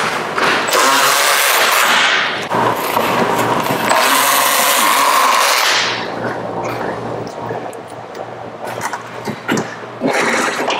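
Cordless power ratchet whirring in two long runs, spinning off the bolts and nuts that hold an underbody heat shield. It stops about six seconds in, leaving a quieter stretch with a low hum and a few clicks.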